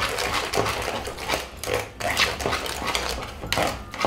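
Spatula stirring and scraping thick chocolate cake batter in a plastic bowl, wet squelching strokes a few times a second, as the wet and dry ingredients are worked together until no lumps remain.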